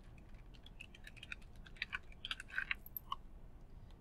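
Faint typing on a computer keyboard: quick, irregular keystrokes, busiest in the middle.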